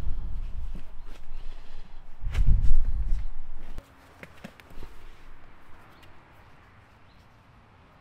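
Low rumbling and thumping of movement against a body-worn microphone while a SAM splint is fitted to the leg, loudest about two and a half seconds in and cutting off suddenly just before four seconds. After that, faint crinkles and clicks as a roll of fixation bandage is handled.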